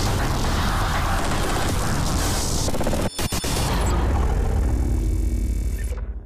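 Loud cinematic sound effects for an animated logo intro: a heavy rumbling boom with rushing noise, broken briefly about three seconds in, then fading away near the end.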